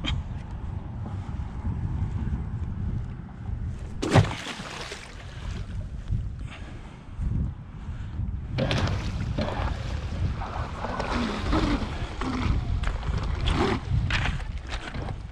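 Electric RC catamaran running on the water on a 12-cell battery setup. Its drive and spray come up in bursts about four seconds in and again from about halfway, over steady wind buffeting the microphone.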